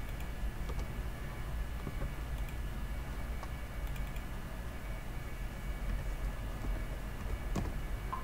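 Steady low hum and hiss of room and microphone background, with a few sparse, faint clicks of a computer mouse, the clearest near the end.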